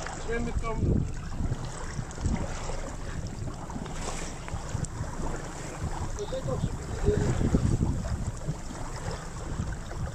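Wind buffeting an action-camera microphone over open water, a steady low rumble with water sloshing against a jet ski's hull.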